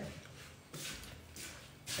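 Quiet room tone with a few faint rustles, a little under a second in and again about halfway.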